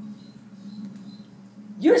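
A faint steady low hum with a few faint high tones during a pause in a woman's speech; her voice resumes near the end.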